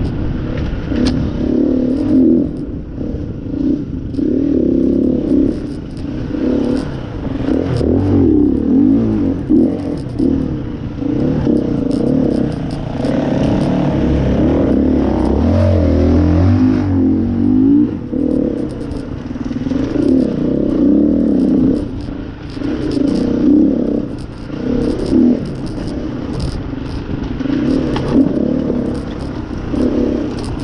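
Gas Gas 350F single-cylinder four-stroke enduro motorcycle engine ridden hard on a sandy trail, its revs rising and falling constantly with the throttle, with clattering from the bike over rough ground. About halfway through, the engine note turns deeper and boomier for a few seconds inside a stone tunnel.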